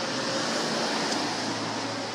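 A steady, even rushing noise with no distinct events.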